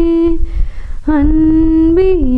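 A woman singing slowly and unaccompanied into a microphone: a long held note, a short breath, then another long held note that steps down in pitch at the end.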